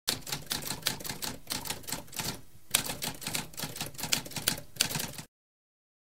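Typewriter sound effect: rapid manual typewriter keystrokes at several a second, a brief pause between two and three seconds in, then more keystrokes that stop a little after five seconds.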